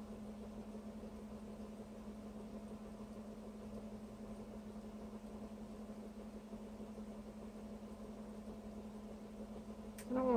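Quiet room tone with a steady low hum.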